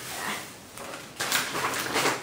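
Handling noise of notebooks being moved on a wooden desk: a brief rustle and scrape at the start, then a longer scraping rustle in the second half.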